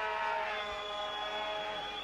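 Stadium crowd noise with a long, steady held note of several tones rising from the stands, fading near the end.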